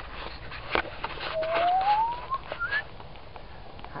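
A person whistling one rising note, then a short higher one, over scattered knocks and rattles from the bicycle riding across bumpy grass.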